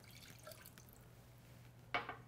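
Faint splashing of water poured from a small glass bowl into an empty stainless steel saucepan, then a single sharp clink near the end as the glass bowl is set down on the stone countertop.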